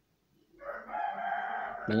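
A rooster crowing once, starting about half a second in and lasting over a second.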